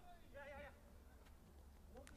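Near silence, with a very faint, brief wavering voice-like sound about half a second in.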